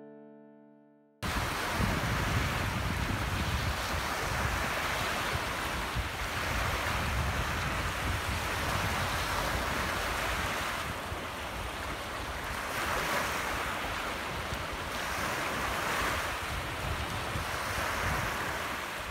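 Small surf waves washing up a sandy beach, with wind buffeting the microphone. The sound cuts in suddenly about a second in and then runs on steadily, swelling gently as each wave comes in.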